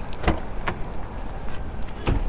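The driver's door of a 2010 Porsche 911 GT3 being unlatched and opened: a couple of sharp clicks from the handle and latch early on, over a steady low background rumble.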